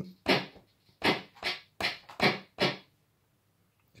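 Synthesized handclaps from a SynClap analogue handclap-generator circuit built on a prototype board: six short, sharp claps at uneven spacing, stopping a little before the three-second mark.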